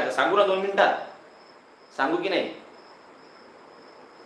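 A man's voice speaks briefly at the start and again for a moment about two seconds in. In the pauses a faint, steady, high-pitched tone carries on under the room.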